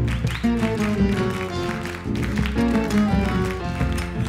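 Live folk band playing an instrumental passage of a chacarera: acoustic guitars strumming chords over the rhythmic beat of a bombo legüero drum.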